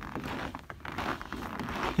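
Irregular crunching and rustling from someone walking in snow: footsteps on the snow and the rustle of a winter coat, with no steady tone.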